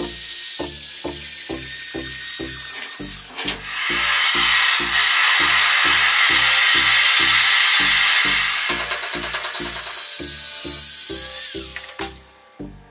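An angle grinder's cut-off disc grinding into a steel hex coupling nut and threaded rod, a harsh steady noise, with a steady hiss from a gas torch through the middle and grinding again toward the end. A backing track with a steady beat runs underneath.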